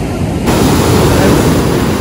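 Ocean surf breaking and washing up a sandy shore: a loud, even rush that starts abruptly about half a second in.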